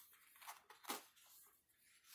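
Near silence, with two faint, brief rustles from the plastic-covered diamond painting canvas as it is rolled off its foam roller.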